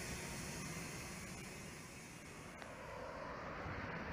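A large sightseeing coach's diesel engine running at low speed, a steady low rumble with road and air noise, easing off a little about halfway and growing again near the end.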